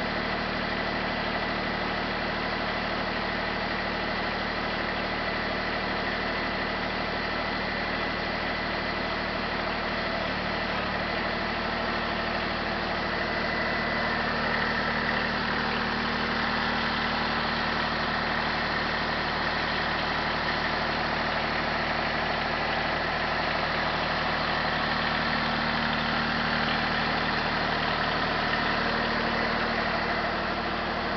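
Compact tractor's engine running steadily while its loader hydraulics raise a dump trailer's bed, growing slightly louder from about halfway through.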